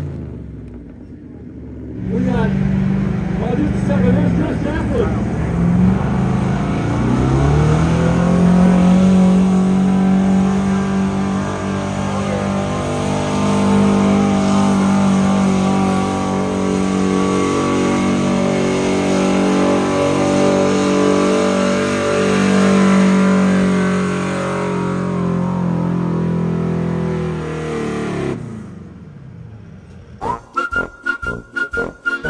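Square-body Chevrolet pickup's engine at full throttle pulling a weight-transfer sled down a dirt pull track. It starts about two seconds in, revving up and wavering for several seconds as the truck launches, then holds one steady high note for about twenty seconds before dropping off near the end.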